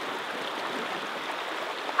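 Shallow stream running over rocks: a steady rush of water.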